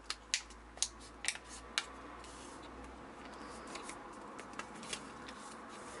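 Origami paper being folded and pressed by hand: several sharp crinkling ticks in the first couple of seconds, then a faint, steady rustle as the fold is pressed down flat.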